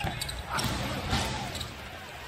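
A basketball being dribbled on a hardwood arena court, a few bounces over the low hum of the arena, with faint voices in the background.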